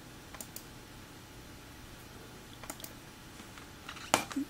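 Faint clicks of a computer mouse button as menu items are chosen: two quick click pairs, about half a second in and just under three seconds in, over a quiet room background.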